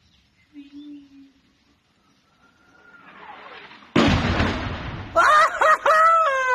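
An incoming shell whistles, its tone falling in pitch, and ends about four seconds in with a sudden loud explosion that rumbles away. Men's voices break out shortly after the blast.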